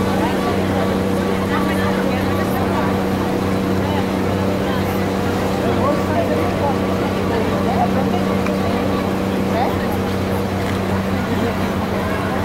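A vehicle engine idling with a steady, even drone, under scattered voices of people in the street.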